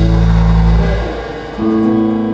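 Live gospel band music with electric guitar winding down: a held chord with bass fades out about a second in. Then the electric guitar rings out a new held chord.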